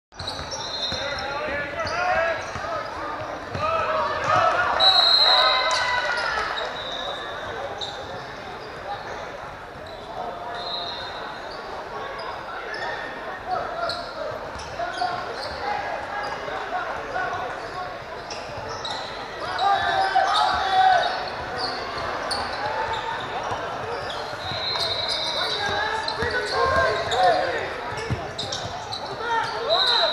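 Basketball game sounds echoing in a large gymnasium: voices of players and spectators calling out, with a basketball bouncing on the hardwood floor and a few short high-pitched squeaks or tones.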